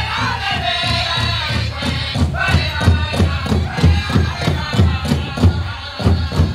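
Powwow drum group singing a dance song over a steady drumbeat, about three beats a second, that strikes harder from about two seconds in.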